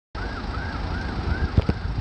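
A siren wailing, its tone rising and falling a couple of times a second, faint under a low outdoor rumble; two thumps near the end.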